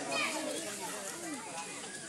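Background chatter of children's and adults' voices, several overlapping at moderate level, with no single clear speaker.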